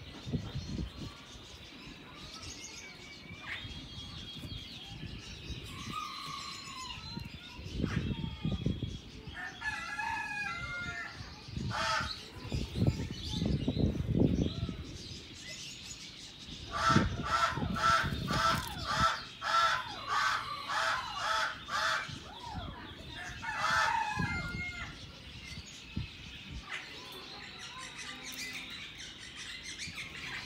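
Birds calling in an aviary. A little past the middle comes a quick run of about nine harsh, evenly spaced notes, and other scattered calls come before and after it.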